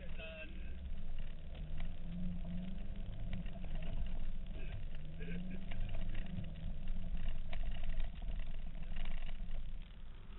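Four-wheel drive's engine heard from inside the cab, revving up and down as it is driven through mud, over a constant low rumble with knocks and rattles from the bouncing cab.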